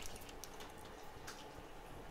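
Quiet bench room tone with faint rustle and a few light clicks from power-supply cables being handled and a connector being fitted to a phone's board.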